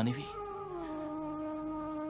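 Background score: a single sustained chord from a synthesizer or horn-like pad, dipping slightly in pitch at first and then held steady.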